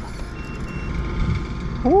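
Steady low rumble of wind and boat noise on open water, with two short high-pitched beeps in quick succession near the start.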